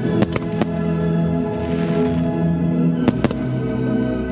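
Aerial firework shells bursting over loud classical music: three sharp bangs in the first second and two more about three seconds in.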